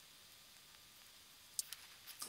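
Near silence: faint room tone, broken by two brief sharp clicks near the end.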